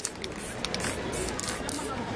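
Aerosol spray-paint can being sprayed onto a paper painting in a few short hissing bursts.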